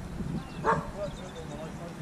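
A dog barking once, a single short bark a little under a second in.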